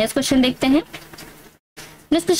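A woman speaking briefly, then faint background noise, cut by a sudden short gap of total silence at an edit.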